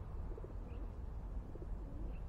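Faint cooing of a dove, two low calls about a second apart, with one short high chirp from a small bird, over a steady low background rumble.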